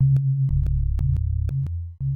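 Electronic music: a deep synthesized bass line held without a break, stepping to a new note about every half second, with sharp clicks about four times a second.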